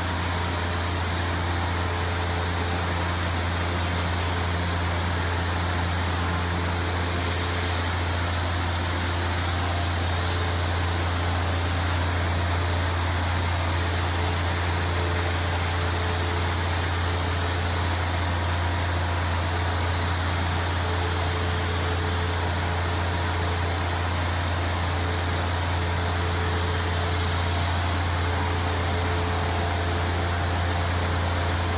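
Compressed-air spray gun spraying a tinted shading coat onto a cherry tabletop: a steady hiss of air and finish, over a constant low machine hum.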